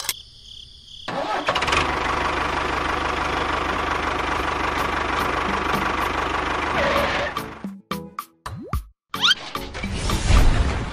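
Tractor engine sound starts about a second in and runs steadily for about six seconds, then breaks up into short choppy fragments and a rising whistle-like glide near the end.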